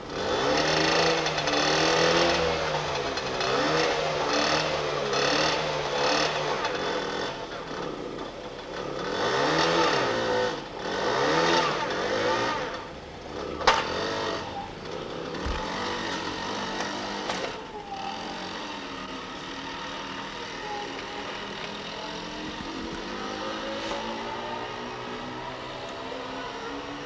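Small moped engine catching just after the start and being revved up and down repeatedly, with a sharp click about halfway through. In the second half it runs steadier and fainter, its pitch slowly wavering as the moped pulls away.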